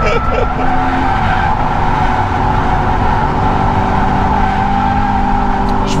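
Subaru BRZ's flat-four engine running hard under load while the tyres squeal steadily through a long slide, heard from inside the cabin.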